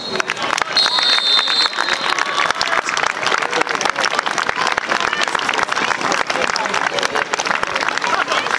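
Referee's whistle blown once, long, about a second in: the final whistle ending the match. Applause and voices follow.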